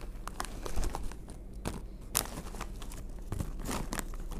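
Foil-lined Cheetos snack bag crinkling as a hand rummages inside it for snacks: an irregular run of crackles, with a few louder rustles.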